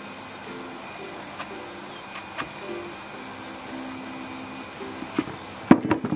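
Soft background music with a plucked-string melody plays over a knife trimming the stem of a porcini mushroom. A few light clicks come through it, and the loudest, near the end, is trimmed pieces of stem dropping into a plastic bucket.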